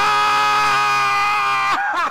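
A man's long scream of pain from a burn, held at one steady pitch and then cut off sharply near the end.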